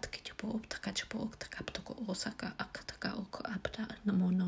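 A voice rapidly vocalising 'light language': a fast stream of short, non-word syllables, partly whispered, broken up by many quick clicks of the tongue and lips.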